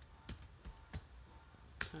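Computer keyboard keys clicking as a few separate keystrokes are typed, faint and spaced out, the sharpest one near the end.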